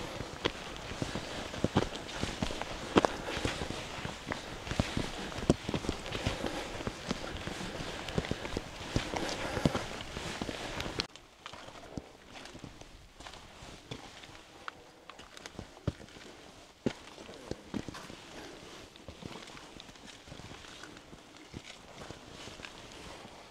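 A hiker's footsteps, roughly one step a second, over a steady hiss on the forest trail. About halfway through, the hiss and steps drop suddenly to a fainter level, and the steps go on more faintly on rocky ground.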